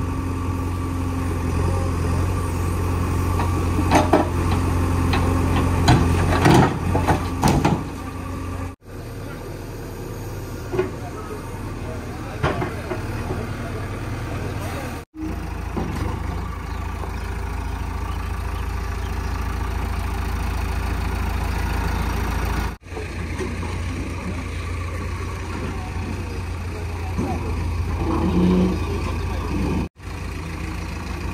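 JCB 3DX backhoe loader's diesel engine running steadily, with several knocks and clatters of stone between about four and eight seconds in as the bucket handles rocks.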